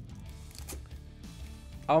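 Plastic foil wrapper of a trading-card booster pack being torn open and crinkled by hand, with a few short crackles, over quiet background music.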